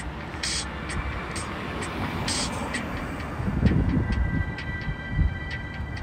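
Street ambience at a road intersection: a steady low rumble of traffic, swelling louder for about a second near the middle, with short hissy bursts every couple of seconds.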